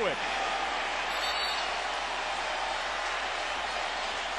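Steady crowd noise from an arena football crowd.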